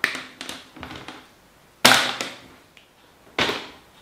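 Hand-held cutters snipping through a length of two-core electrical cable: two sharp snaps about a second and a half apart, after a few lighter clicks of the tool and cable being handled.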